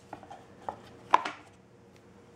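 A few light knocks and taps from handling a Belkin keyboard folio case and a Nexus 7 tablet as the tablet is fitted into the case. The sharpest knock comes a little past the middle.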